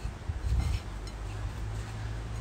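Hands working croquetas in breadcrumbs on a worktop: a brief rustle with soft knocks about half a second in, over a steady low rumble.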